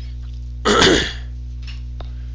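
A person clears their throat once, briefly, about two-thirds of a second in, over a steady electrical mains hum.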